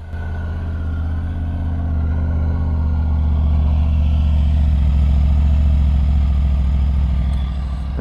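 Triumph Tiger 850 Sport's 888cc inline-triple engine idling steadily just after starting, heard through its stock silencer. It grows louder over the first few seconds as the silencer comes close, then eases slightly near the end.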